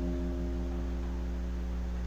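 An acoustic guitar's F note ringing out and slowly fading, over a low steady hum.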